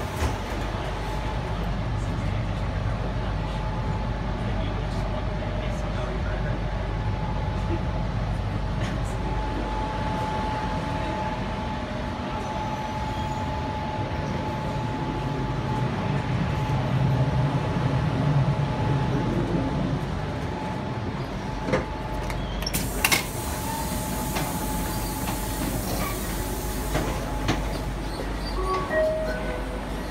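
Interior of a Sydney Trains Tangara electric train carriage: steady rumble of the car running, with a steady whine held for most of the time. A hiss rises about two-thirds of the way through, with a few sharp clicks.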